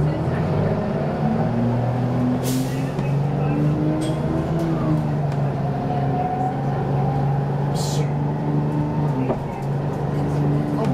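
Detroit Diesel 6V92 two-stroke V6 diesel of a 1991 Orion I transit bus, heard from inside the passenger cabin while under way: a steady drone whose pitch rises a little and eases back. Two short hisses of air break in, a few seconds apart.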